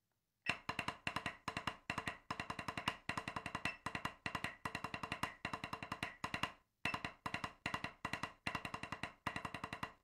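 Drumsticks on a practice pad playing a fast snare warm-up exercise in even, rapid strokes, starting about half a second in, with one short break about two-thirds of the way through.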